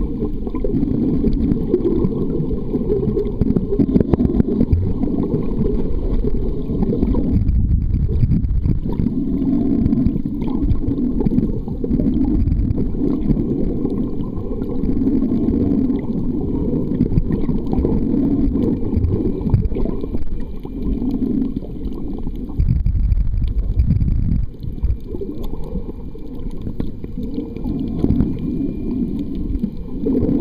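Muffled low rumble of water heard by a camera microphone inside an underwater housing, swelling and easing every few seconds as the camera moves through the sea.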